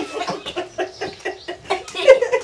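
Chickens clucking: a quick run of short clucks, several a second.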